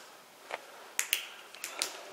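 Several sharp, dry clicks, the first about half a second in and the rest bunched in the second half, over quiet room tone.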